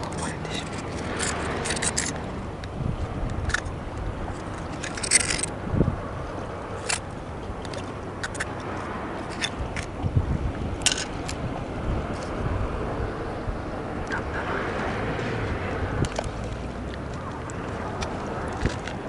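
A steel knife blade clicking and scraping against a shellfish shell as bait is cut and worked onto a hook, in scattered sharp clicks and short scrapes, over a steady low outdoor rumble.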